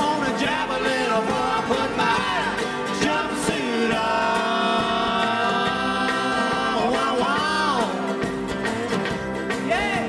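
Live acoustic string band playing an up-tempo country-bluegrass song: guitars, banjo and upright bass, with a lead line that slides and bends in pitch, holding long steady notes in the middle of the stretch.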